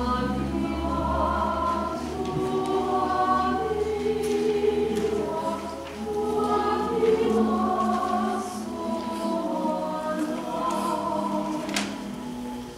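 A church congregation singing a hymn together, with long held notes.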